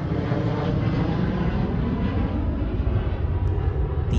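Airplane flying over: a steady, loud rumble of aircraft engine noise, heaviest in the low end.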